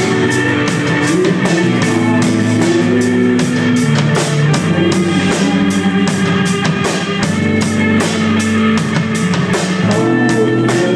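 Live indie rock band playing: a drum kit keeps a steady beat of cymbal and drum hits under held electric guitar and keyboard notes.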